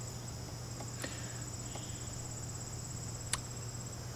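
Outdoor insect chorus trilling steadily and rapidly, over a low steady hum, with a sharp click about three seconds in.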